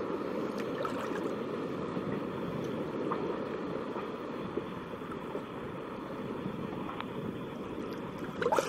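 Steady rushing noise of wind and shallow water on the microphone, dull and low, with a few faint ticks.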